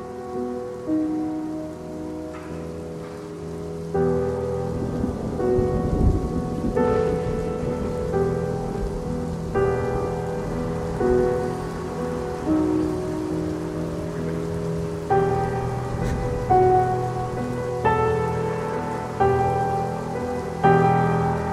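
Soundtrack music of slow held chords, changing every second or two, over a steady sound of rain. A low rumble swells about four seconds in and peaks around six seconds.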